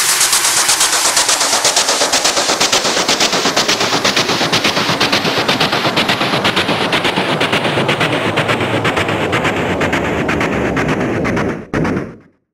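Electronic dance track in a build-up: a fast, even roll of noisy hits, about eight a second, with the high end slowly filtered away. It breaks off suddenly near the end.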